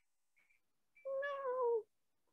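A cat meowing once, faintly, about a second in, the call dropping in pitch at its end.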